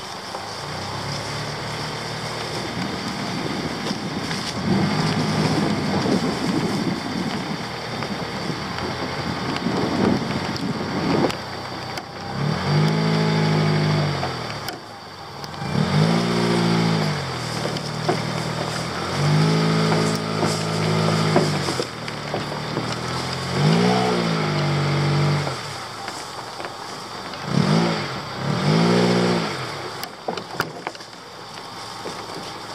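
1999 Honda CR-V's four-cylinder engine driving over rough ground, revving up and back down in about six separate surges in the second half. The first ten seconds or so are dominated by rough rattling and knocking from the car bumping along.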